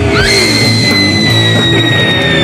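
Garage rock band playing: drums and bass under fuzz guitar, with one long high note that slides up about a quarter second in and is held for the rest, sinking slightly.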